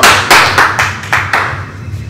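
Hand clapping: about six sharp claps, roughly four a second, over the first second and a half, then dying away.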